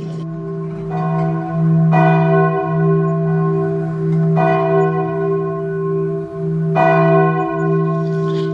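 Church bell tolling: several slow strikes a couple of seconds apart, each ringing on into the next.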